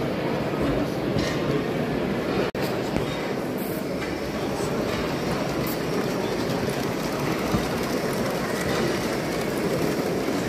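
Garden-scale live steam locomotives running with their trains on the layout track, heard against the steady hubbub of a crowded exhibition hall. The sound cuts out for an instant about two and a half seconds in.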